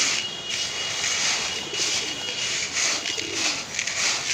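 Dry pigeon-feed mix of maize, peas and small grains being stirred by hand in a plastic tub: a steady rattling rustle of seeds.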